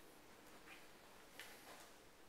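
Near silence: room tone with a few faint clicks, one a little past a third of the way in and a couple more in the second half.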